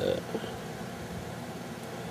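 A man's voice ends a word right at the start, then only a steady low background hum of room noise.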